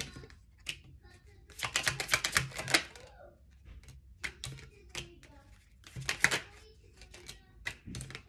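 Tarot cards being shuffled and dealt onto a wooden table: a quick run of rapid card clicks about a second and a half in, another shorter run around six seconds, and scattered softer taps between.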